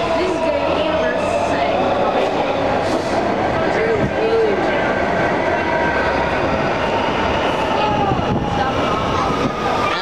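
Washington Metro train pulling into the station alongside the platform: a steady rumble of wheels on rail under the whine of the train's motors, the whine falling slowly in pitch as the train slows.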